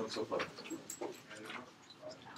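Faint, indistinct voices talking quietly in short snatches.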